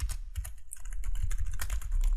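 Computer keyboard typing: a quick, irregular run of keystrokes over a steady low hum.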